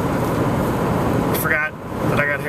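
Steady road and engine rumble inside a moving car's cabin, with a short burst of a man's voice near the end.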